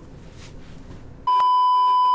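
Colour-bars test tone: a loud, steady, single-pitched beep that starts suddenly about a second and a quarter in, after a moment of faint room noise.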